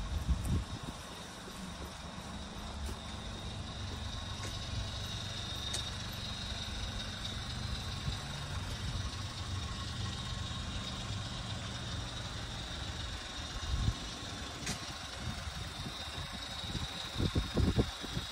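Kia Stonic 1.0 T-GDI's three-cylinder turbo petrol engine idling quietly and steadily, with a few soft thumps near the end.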